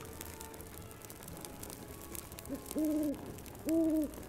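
An owl hooting twice, each hoot a steady call of about half a second, the first starting a little after halfway and the second near the end.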